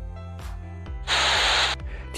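Background music with a soft, steady beat, then, about a second in, a loud burst of hiss lasting under a second that cuts off suddenly: a video-editing transition sound effect.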